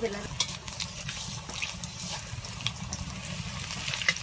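Batter fritters (pakudi) deep-frying in hot oil in a metal kadai: steady sizzling and bubbling, with scattered small pops.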